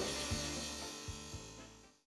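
Background music fading out steadily to silence.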